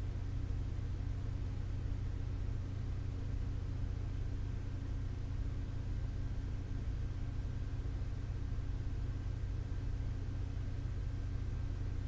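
Steady low hum with a faint even hiss, unchanging throughout, and a faint thin steady tone above it: constant room background noise with no sudden sounds.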